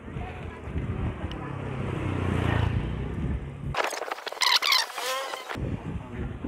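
A motor vehicle's engine rumbles and swells, loudest about two and a half seconds in, as it passes on the road. Near the end the sound cuts abruptly to a burst of high, wavering tones with no low rumble, lasting under two seconds, then drops back.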